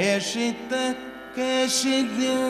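Kathakali vocal music: a singer holding ornamented, wavering notes in short phrases, with brief breaks between them.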